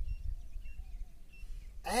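Low wind rumble on the microphone, with a few faint, short bird chirps; a man's voice comes back in near the end.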